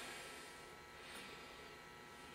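Near silence: faint room tone, with a soft sound fading out at the start and a slight faint swell about a second in.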